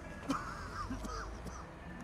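A young man wheezing during an asthma attack: several short, strained, squeaky breaths in the first second or so.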